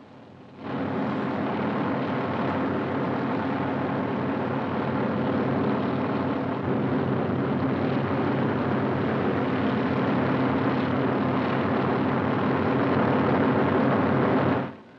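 Helicopter engine and rotor running steadily overhead. It starts about half a second in and grows slightly louder toward the end.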